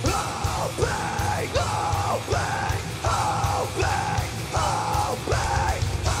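Metalcore band playing live: distorted electric guitars and drums under a run of short shouted vocal phrases, about one every three-quarters of a second, each dropping in pitch at its end.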